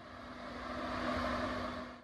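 Steady engine noise with a constant low hum, swelling over the first second and fading out at the very end.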